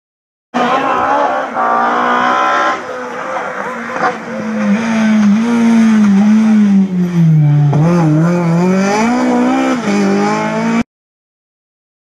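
BMW E30 M3 rally car driving hard on a stage, its engine revs rising and falling through gear changes. The sound starts abruptly shortly after the beginning and cuts off abruptly near the end.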